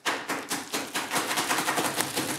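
A crunchy bar being crushed inside its wrapper: a rapid, irregular run of crackling and crunching clicks as the pieces break up in the packaging.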